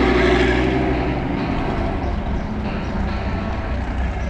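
A car engine running loudly with a deep rumble. It starts abruptly and is loudest in the first second, then holds steady.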